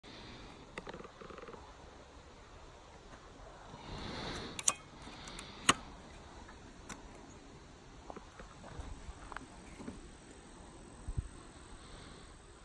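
Sharp clicks and clacks of a G36 rifle with an underslung 40 mm grenade launcher being handled, with the two loudest snaps about five and six seconds in, over faint outdoor background noise.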